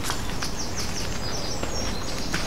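Small woodland birds singing, a quick run of high, falling chirps about half a second in, over a steady low rumble. A few soft footsteps sound on a dirt path.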